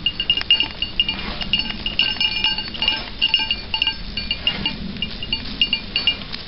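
Several small metal bells tinkling irregularly and continuously, short clear pings at a few fixed high pitches.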